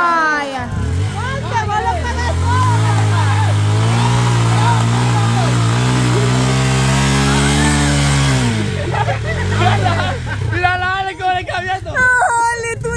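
Dual-sport motorcycle engine revved hard and held at high revs for several seconds while the bike labours, bogged in a mud rut; the revs drop near the end, then rise again.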